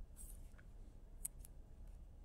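Quiet room tone with a few faint, short clicks, two of them close together a little past the middle: a computer mouse being clicked while the slideshow's pen tool fails to activate.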